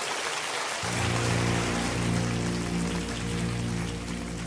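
Live worship recording: a congregation's applause and crowd noise continues while a sustained keyboard chord enters about a second in and is held steadily underneath.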